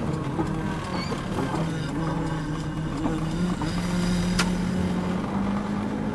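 Car engine heard from inside the cabin, its pitch rising slowly and steadily as the car accelerates, with one sharp click about two-thirds of the way through.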